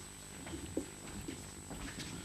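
Quiet lecture-hall room tone with faint scattered rustles and small knocks, and a brief low sound a little under a second in.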